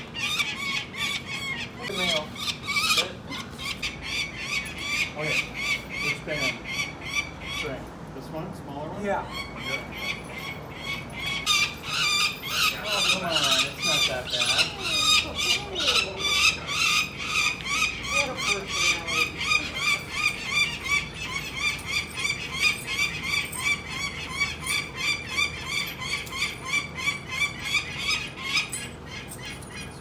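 Peregrine falcon calling: a fast, steady run of harsh, high-pitched calls, several a second, with a short break about eight seconds in. Faint voices underneath.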